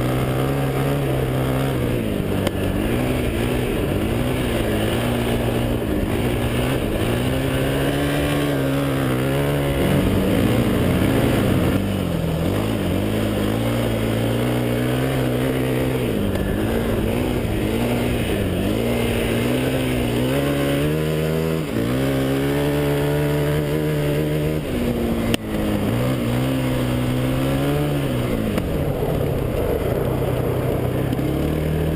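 KTM quad's single-cylinder four-stroke engine heard from the rider's seat, revving up and falling back again and again as the quad is ridden hard over snow. There is one sharp knock late on.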